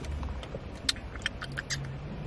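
Quiet parked-car cabin with a steady low rumble and a few light, scattered clicks and taps.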